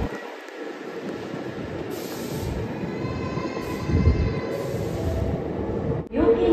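Hankyu electric train running through a station: a steady rumble, with a whine of several thin tones coming in about halfway through.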